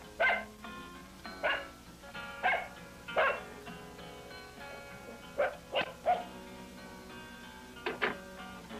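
A small dog barking about seven times, four barks spaced out and then three in quick succession, over background music.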